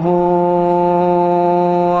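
A man chanting Arabic in the melodic style of a sermon's opening testimony of faith, holding one long, steady note.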